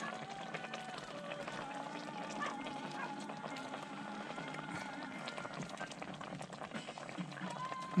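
Faint background music with soft scrapes and ticks of a plastic spatula stirring a pot of coconut-milk stew.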